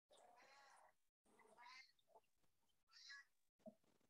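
Near silence, with a few faint, brief pitched sounds.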